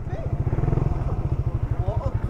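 Small motorcycle engine idling, a steady low, fast putter.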